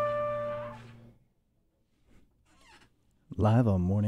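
A jazz combo's closing chord, trumpet and alto saxophone held over piano and double bass, ending the tune. It is released about a second in and dies away to silence, and a man's voice begins near the end.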